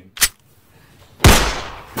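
A single loud pistol shot about a second in, ringing out with a long echo that fades away. A short sharp click comes just before it, near the start.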